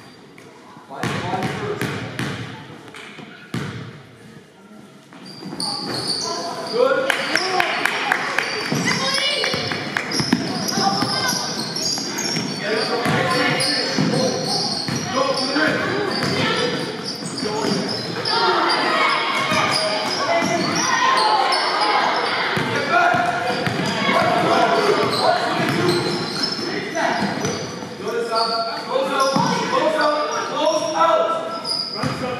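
A basketball bouncing on a hardwood gym floor, with shouting voices echoing in the large gym. It is quieter for the first few seconds, with a few separate bounces, then gets busier and louder from about six seconds in as play runs up the court.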